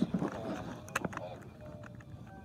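Handling noise from fingers working inside a plush toy's fabric, with one sharp click about a second in.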